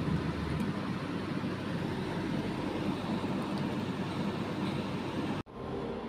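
Steady background rumble and hiss of ambient noise with no distinct events, cutting out for an instant near the end.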